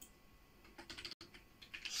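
Typing on a computer keyboard: faint runs of quick key clicks, strongest in the second half, with the audio cutting out for an instant about a second in.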